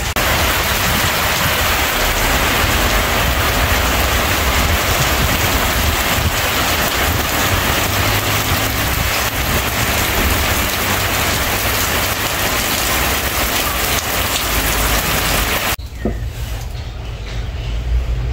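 Rain falling steadily in a dense, even hiss. It cuts off suddenly near the end, leaving a quieter background.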